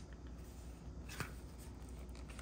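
Faint rustling of paper pages and a faux-leather planner cover being handled, with a couple of light clicks about a second in, as a paper insert is worked loose from the cover.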